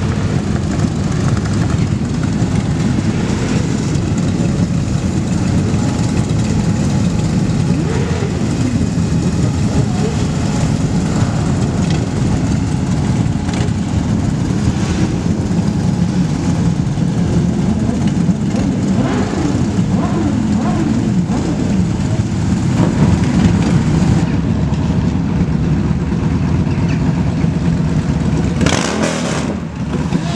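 Many motorcycle engines running together in a large group, with a steady low rumble and occasional rising and falling revs from individual bikes. The sound dips briefly near the end.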